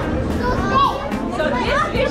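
Children's high voices talking and exclaiming over one another, over the steady chatter of a busy market crowd.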